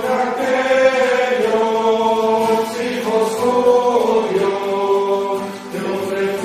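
Voices singing a slow offertory hymn in long held notes, gliding from note to note, with a drop in pitch about four seconds in.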